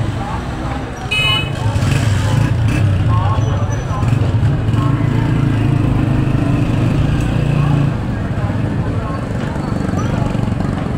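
Busy street-market traffic: a vehicle engine running close by with a steady hum, a short horn toot about a second in, and people talking.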